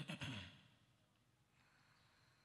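A Qur'an reciter's short, faint breath in the first half second, then near silence.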